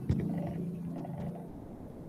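A man's voice holding a drawn-out, steady hum or 'uhh' on one low pitch, fading out after about a second and a half.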